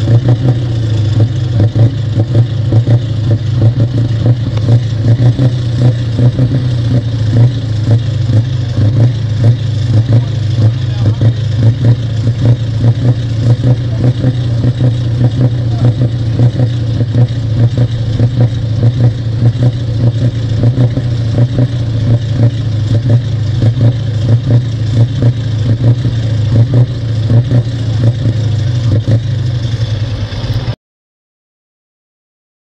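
Truck diesel engine running steadily at one constant speed, heard close to its side-exit exhaust pipe, without revving up or down.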